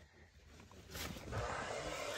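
Rustling and handling noise as quilted moving blankets and clutter on a truck seat are pushed aside, starting about a second in after a near-silent moment.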